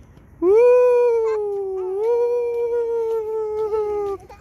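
A young child's long, loud drawn-out 'aaah', held at a near-steady pitch for about three and a half seconds, starting about half a second in.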